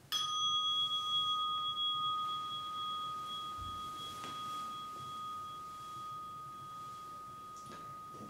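A meditation bell struck once, ringing on and slowly fading, marking the end of the sitting. There is a soft low thump about three and a half seconds in.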